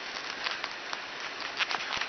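Handling noise from a plastic action figure with cloth robes turned in the hands close to the microphone: soft rustling and a few light clicks over a steady hiss.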